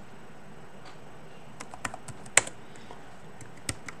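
Computer keyboard keys pressed: a scattered handful of sharp keystrokes in the second half, one clearly louder than the rest, over faint room noise.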